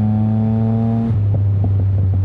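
Yamaha MT-09's three-cylinder engine running through a straight-piped Mivv X-M5 exhaust with a race tune, holding a steady note at cruising speed. About a second in the steady note drops away into a rougher, irregular sound with short pops over a continuing low drone.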